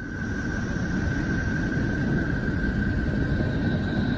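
Space-probe recording presented as the sound of Neptune, made from electromagnetic vibrations recorded in space and converted into audible sound. It is a steady, dense, low rushing noise with a thin, steady high tone held above it.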